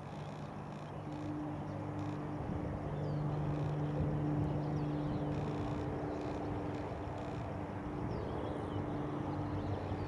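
Outdoor background noise: a steady low hum that fades in and out, with faint short high chirps scattered through it.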